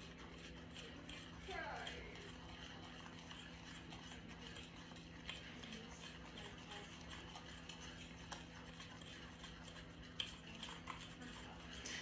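Small wire whisk stirring dry ground spices in a stainless steel bowl: a faint, steady scratching with light ticks of the wires against the metal.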